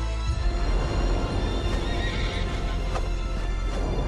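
A horse whinny, a wavering high cry about a second and a half in, over trailer music with a deep rumble that swells in just after the start. A sharp click comes near the end.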